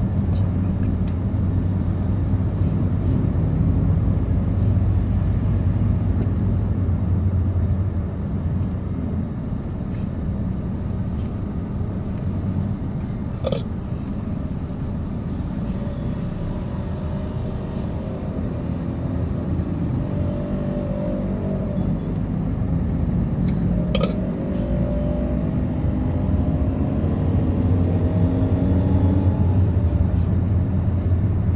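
Steady low engine and road rumble heard from inside a moving car. Two short sharp knocks come about halfway through and again later, and faint rising engine tones of other vehicles come and go above the rumble in the second half.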